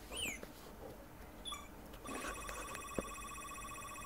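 A few short, high, falling chirps near the start, then a steady, rapidly trilling tone that starts about halfway through and lasts about two seconds. A single faint knock comes about three seconds in.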